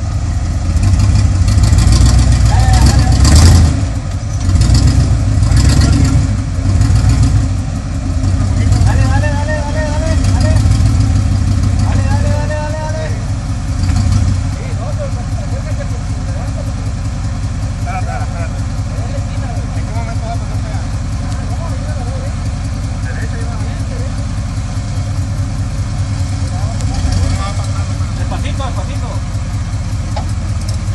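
V8 engine of a Jeep Wrangler YJ rock crawler, revved in repeated bursts as it climbs over boulders for the first half, then running steadily at low revs for the rest. Voices call out briefly partway through.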